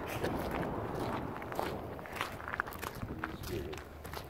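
Footsteps of people walking on the gravel ballast of a railway track, an irregular series of steps.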